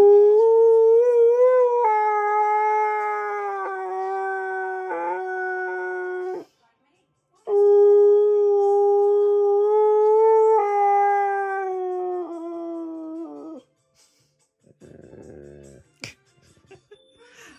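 Husky–malamute mix dog howling: two long, steady, pitched howls of about six seconds each with a second's pause between, each breaking into a few short notes at its end. Near the end, a short low groan.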